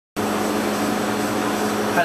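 Steady rushing background noise with a low hum, starting abruptly a split second in, like a ventilation or air-handling system running.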